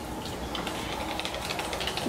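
Wire whisk beating thick winter squash pancake batter in a ceramic mixing bowl: a fast run of light clicks as the tines strike the bowl, while water is worked in to thin the batter.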